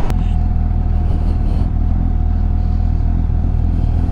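Kawasaki Z800's inline-four engine running steadily at a low, even idle.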